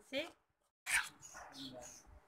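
A spoon stirring wet malpua batter in a steel bowl, faint and patchy, after a moment of dead silence at an edit.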